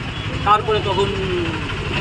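A man speaking briefly over a steady low engine rumble from street traffic.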